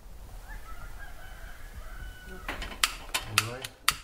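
A rooster crowing faintly over morning ambience, followed in the second half by a run of sharp clinks and clatter.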